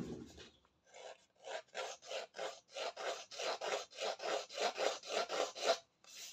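Handheld paper distresser scraped again and again along the edge of a strip of cardstock, about four short strokes a second, starting about a second in. Each stroke roughs up and frays the paper edge to give it an aged look.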